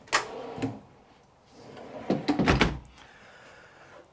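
A drawer in a motorhome's bedroom drawer bank being worked: a sharp click right at the start, a short slide, then a cluster of knocks and a low thud about two and a half seconds in as it is shut.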